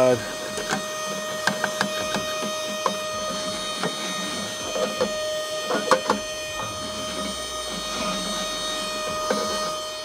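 A small handheld vacuum cleaner runs with a steady whine, sucking dust and debris out of a pellet grill's pellet box. Scattered clicks and rattles come and go as it works.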